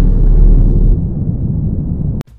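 Deep, loud rumble of a cinematic boom effect under an animated logo reveal. It drops in level about a second in and carries on as a quieter low tail.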